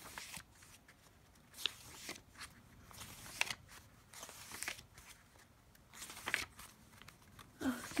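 Paper pages of a thick, stuffed journal being turned one after another by hand. Each turn is a short, soft papery swish, about one every second or so.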